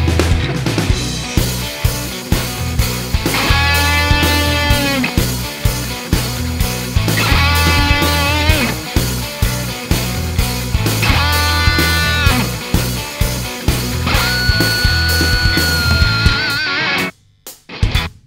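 Lead electric guitar playing four held, bent notes with vibrato over a rock backing track of drums and bass. These are the opening bends of a guitar solo. The music cuts off suddenly about a second before the end.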